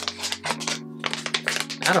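Paper rustling and crackling in quick, irregular clicks as a paper sample sleeve is handled and a small paper sample pulled out.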